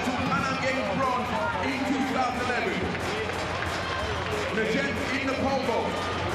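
Race commentary on a TV broadcast: a man's voice calling the race over steady stadium crowd noise.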